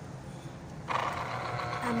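Small electric citrus juicer's motor starting about a second in and running steadily, the plastic reamer cone turning under a pressed orange half.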